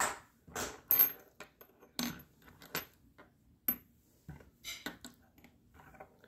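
Steel nails clicking against one another and tapping on a wooden tabletop as they are laid down one at a time: about ten light, irregular clicks, some with a short high metallic ring.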